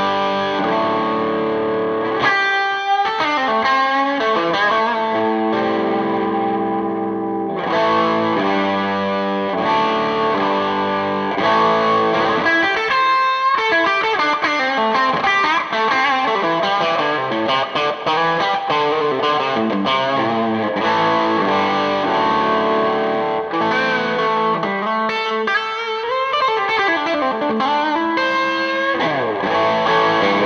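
Electric guitar played with a light overdrive on the bridge P90 pickup of a Gibson Murphy Lab '56 Les Paul goldtop reissue, mixing held chords with faster single-note runs and a few bends.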